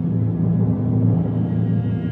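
Symphony orchestra playing sustained low notes, with timpani struck by soft felt mallets underneath, swelling slightly about a second in.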